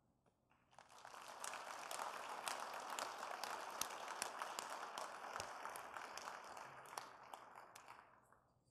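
Audience applauding: many hand claps blending into a dense patter that starts about a second in, holds steady, and tapers off near the end.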